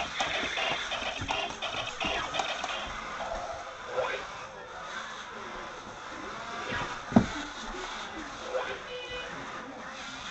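Walking Buzz Lightyear robot toy playing tinny music and voice clips through its small speaker; the tune fades after about three seconds. A sharp knock sounds about seven seconds in.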